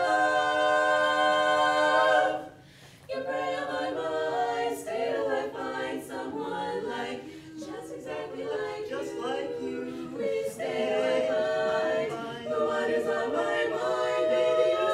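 Women's vocal quartet singing a cappella in harmony. A held chord cuts off about two seconds in, and after a brief pause the voices come back in with moving parts, settling on another long chord near the end.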